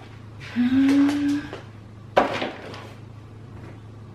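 Groceries being put away in a kitchen cupboard: a short rustle with a brief low steady tone, then one sharp knock as a container is set down on a shelf.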